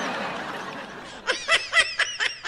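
A person laughing: a breathy, airy stretch, then a quick run of short laugh pulses in the second half.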